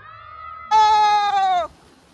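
Children yelling in excitement: a fainter high call, then one loud, long shout of about a second, falling slightly in pitch and cutting off sharply. A faint rush of water follows.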